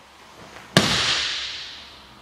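A single sharp smack as a person in a gi drops from a crouch into a seated position on a martial-arts mat, body and hand striking the mat, ringing out and fading over about a second.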